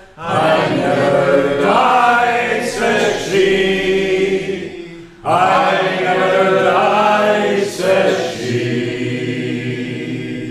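A small mixed group of men and women singing a folk ballad unaccompanied, with a short pause for breath about five seconds in before the next line begins.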